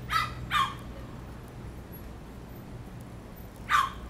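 Three short, loud animal calls, two in quick succession at the start and one near the end, over a steady low street-traffic hum.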